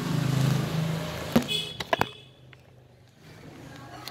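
Rustling and a low hum for the first second and a half, then a few sharp clicks about one and a half to two seconds in as the ignition key of a Suzuki Access 125 scooter is turned off.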